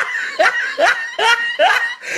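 A person laughing in a run of short, pitched 'oh'-like cries, about five in two seconds, each sliding sharply in pitch.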